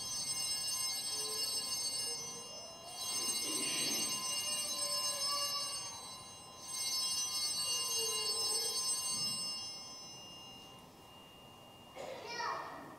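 Altar bells rung three times, each ring lasting about three seconds with short pauses between, marking the elevation of the chalice at the consecration of the Mass.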